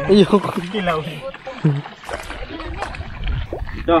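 People talking in the shallows, then a low rumbling noise with small clicks from about halfway in, as they turn over a rock in shallow water.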